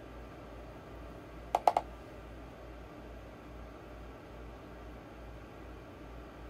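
Quiet room tone with a steady low hum, broken once about a second and a half in by a quick burst of three small clicks.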